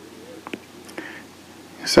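A few faint small clicks, then a man's audible breath in near the end that leads straight into speech.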